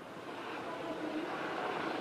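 Steady outdoor city background noise picked up by a reporter's live microphone, a wash of distant traffic and crowd, coming up over the first half second.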